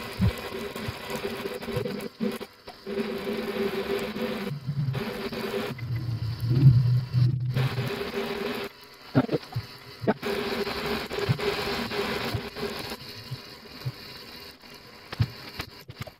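Shimano Ocea Jigger 2001 conventional reel cranked fast to wind braided PE line onto its spool: a steady geared whirr that stops briefly a few times and starts again.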